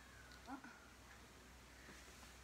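A pug whining faintly: one long high note that trails off just after the start, then a shorter one about half a second in, otherwise near silence.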